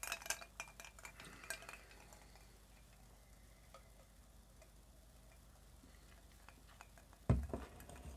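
A run of small clicks and clinks in the first two seconds as a stemmed glass of gin is handled. Then a sip and near quiet, and a short breathy exhale near the end.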